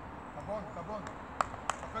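Two sharp taps about a third of a second apart, near the end: a football being touched with the foot as a young player dribbles it through cones.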